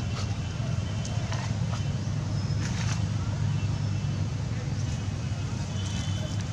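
Steady low rumble of wind buffeting the microphone, with a few brief crackles of dry leaves underfoot.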